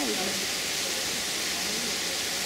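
A brief laugh right at the start, then only a steady, even hiss of background noise.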